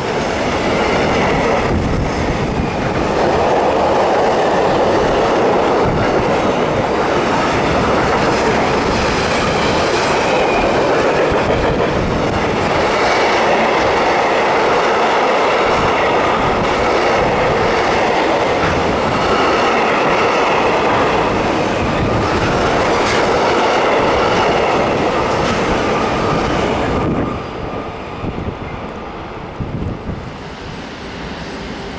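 Intermodal freight train of container and swap-body flat wagons rolling past at speed: a loud, steady rumble and clatter of wheels on rail with faint high whining tones. The noise falls off near the end.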